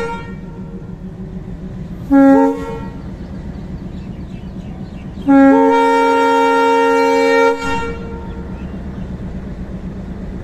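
Indian Railways WDM3 diesel locomotive horn sounding a short two-note blast about two seconds in, then a long blast of about two seconds starting around five seconds in. Under it runs the steady rumble of the moving train.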